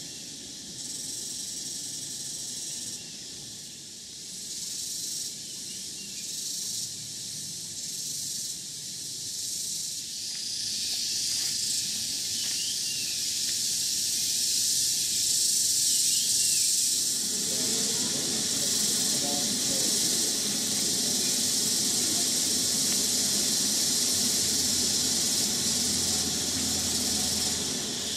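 Rain-forest insect chorus: a high, steady shrill drone that grows louder through the middle. A lower, rougher noise joins about two-thirds of the way in.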